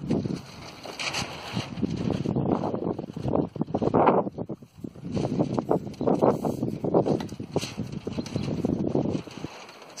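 A small steel-framed land yacht trike rolling on concrete, its wheels and perforated galvanized steel tubing rattling in irregular surges as it is pushed along by foot, with wind on the microphone.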